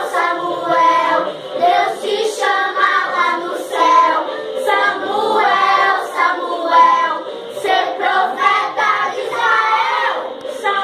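A group of young children singing a gospel praise song together.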